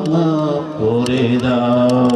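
A man's voice chanting a sermon in a long melodic tune through a microphone and PA. He holds drawn-out notes, pauses briefly for breath about three quarters of a second in, then rises into a new held note.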